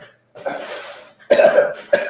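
A man coughing twice, the second cough louder than the first.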